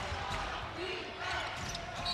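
A basketball being dribbled on a hardwood court under the steady murmur of an arena crowd.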